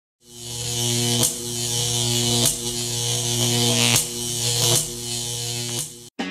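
Electric buzzing sound effect for laser beams: a steady low hum with a hiss above it. It fades in over the first second and is broken by five sharp zaps about a second apart.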